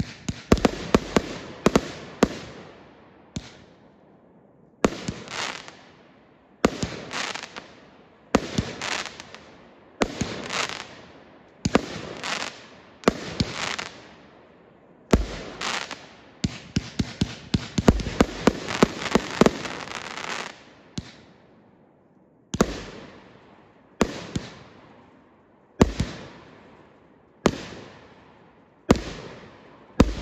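500-gram consumer fireworks cake firing a steady run of aerial shots, about one every second and a half, each a sharp bang that trails off. Rapid strings of shots fired close together come in the first few seconds and again from about a quarter to two-thirds of the way through.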